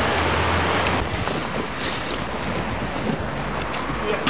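Wind buffeting the microphone: a steady rushing noise, with a low hum underneath for about the first second.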